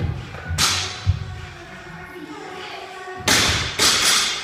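Heavy thuds and slaps of gym equipment, a medicine ball among it, echoing in a large hall. The loudest are two slaps about half a second apart near the end.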